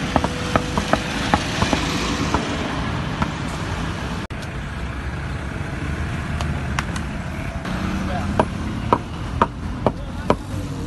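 Hammer tapping paving blocks into place: short sharp knocks at irregular intervals, frequent in the first couple of seconds, sparse in the middle and steadier again near the end, over steady road traffic noise.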